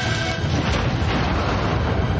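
Fire bursting up from logs, a loud, steady rushing noise that swamps the held music.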